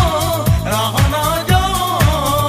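Hindi film song in a DJ remix: a singing voice over a steady dance beat, with a kick drum about twice a second.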